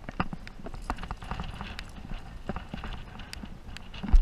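Irregular clicks, knocks and scrapes of a rock climber moving up a crag: hands and shoes on the rock and climbing gear clinking on the harness. A steady low rumble of wind on the camera microphone lies under them.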